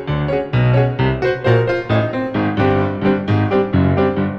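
Virtual grand piano playing a loud, hammered staccato passage with heavy bass notes, about four chords or notes struck each second.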